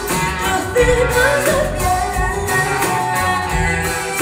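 A live band playing with a woman singing lead into a microphone.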